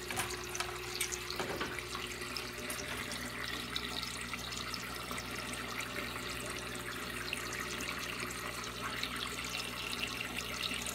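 Water in a 125-gallon saltwater reef aquarium's circulation system trickling and splashing steadily, under a low, steady hum.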